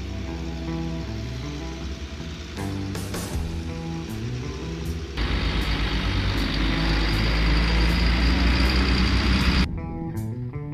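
Background music with guitar and bass throughout. About five seconds in, the loud engine and tyre noise of an M142 HIMARS wheeled launcher truck driving past comes in over it, cutting off suddenly near the end.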